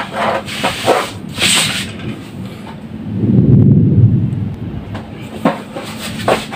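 Small knocks and a scrape as foam pieces and tools are handled on a cutting mat. About three seconds in, a loud low rumble swells and fades over a second or so, followed by one more click.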